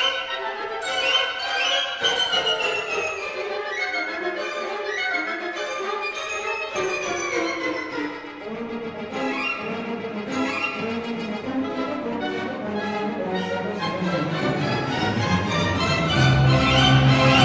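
Symphony orchestra playing ballet music, the strings carrying winding melodic lines that rise and fall. Lower instruments come in about two-thirds of the way through and the music swells toward the end.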